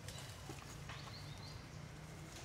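Faint outdoor ambience over a steady low hum: a few soft clicks and rustles in dry leaf litter, with a brief thin high chirp rising in pitch about a second in.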